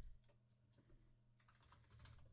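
Faint typing on a computer keyboard: a scattering of soft keystrokes over a low steady hum.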